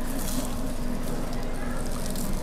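Steady low hum over even room noise, with a short hiss or rustle in the first half-second.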